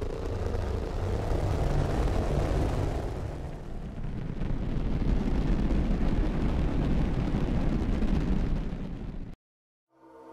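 Arturia Pigments software synth playing its "Rocket Engine" texture preset: a deep, noisy rumble, heavy in the bass, that swells in two waves with a dip about four seconds in, then cuts off suddenly near the end.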